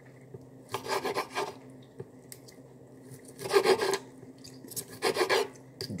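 Three short bursts of close scraping and rubbing, each about half a second, over a steady low hum.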